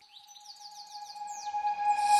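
A transition between background music tracks: a held synth-like tone swells in volume under a quick run of about ten high, falling chirps, about eight a second, leading into the next track.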